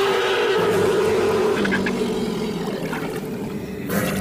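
A long, drawn-out creature roar from a film soundtrack. It rises into a held, rough pitched call, joined by a deeper layer partway through, and fades toward the end.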